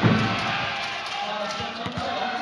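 Indoor volleyball arena ambience between rallies: crowd noise and voices echoing in a large hall. There is a low thump right at the start and a few short knocks in the second half.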